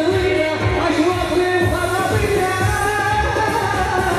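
Loud amplified dance music: a man sings into a microphone, his voice over a steady drum beat.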